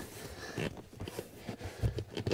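Hands pressing and smoothing a carpeted trim panel in a car footwell: faint brushing on carpet with a few soft taps, the loudest just before the end.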